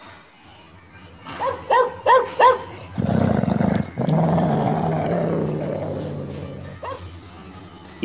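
A dog barks four times in quick succession, then gives a long, low, rough vocalization that fades slowly over about four seconds.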